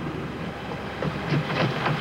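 Quick footsteps on a pavement, a few irregular taps from about a second in, over a steady low hum.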